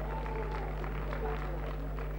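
Scattered audience clapping, irregular claps over a steady low electrical hum.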